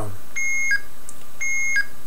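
Arduino-based blue box sounding the IMTS seizure tone twice. It is a combination of two tones: a steady high beep of about half a second that steps briefly down to a lower tone at its end, the signal that would seize an IMTS mobile radio channel.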